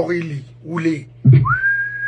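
A person whistling a single note that slides up at the start and then holds steady for about a second, in the second half.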